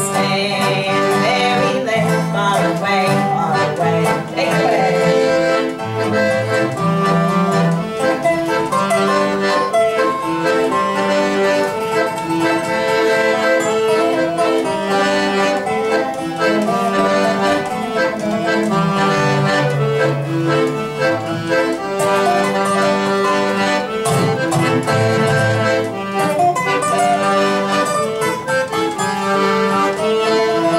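Instrumental passage of accordion and guitar: the accordion plays sustained chords and melody over the guitar, with the bass notes changing every couple of seconds.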